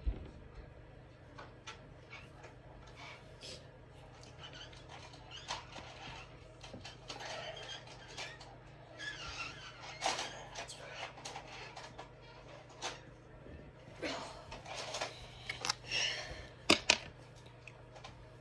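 Light rustling, scraping and small taps of embroidered cloth patches being handled and pressed onto a wall by hand, over a steady low hum, with two sharp clicks near the end.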